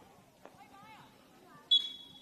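Faint distant calls, then near the end the referee's whistle starts a steady high blast, the first of the full-time whistles signalling the end of the match.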